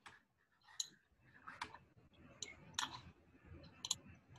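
About six short, sharp computer mouse clicks at irregular intervals, the last a quick double click near the end, over faint low background noise.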